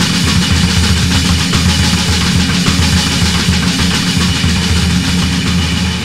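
Loud, dense rock music from a band demo recording: drums and guitars playing together at full tilt with a fast, driving beat.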